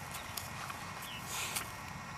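Faint rustling and a few soft, irregular clicks from a boxer dog moving through tall grass.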